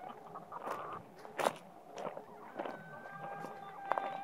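Footsteps crunching on loose gravel, with scattered clicks and one sharper click about one and a half seconds in. Faint held tones come in near the end.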